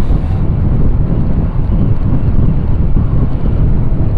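Wind buffeting the microphone on a moving motorcycle, a loud, steady low rumble mixed with the ride's engine and road noise.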